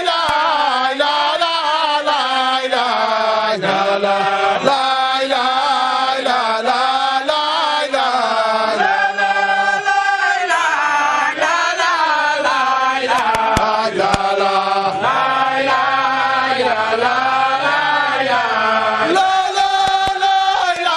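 Men's voices chanting a religious chant in unison, in long melodic phrases that rise and fall without a break.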